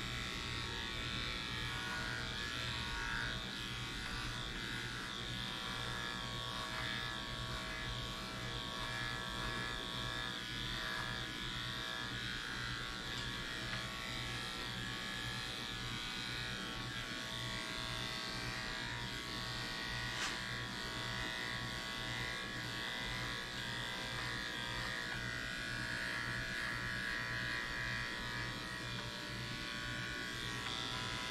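Electric dog grooming clippers fitted with a #10 blade running steadily while being worked over a dog's coat, trimming the hair smooth.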